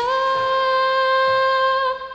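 A young girl's singing voice holding one long, steady note for nearly two seconds, over a soft backing track.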